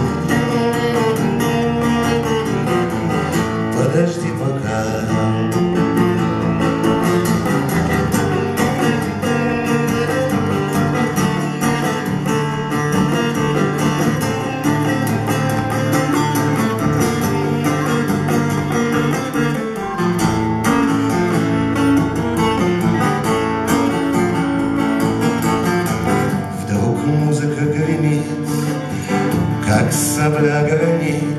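Steel-string acoustic guitar strummed steadily, with a man singing along.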